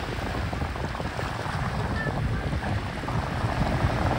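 Helicopter flying low as it comes in to land, a steady rotor and engine noise with a low, uneven chop, mixed with wind buffeting the microphone.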